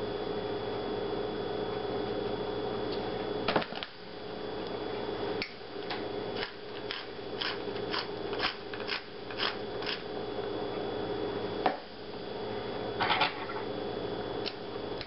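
Metal pepper shaker shaken over a bowl: about a dozen short taps, two or three a second, from about five to ten seconds in. A single knock comes just before, and a couple more near the end, over a steady low hum.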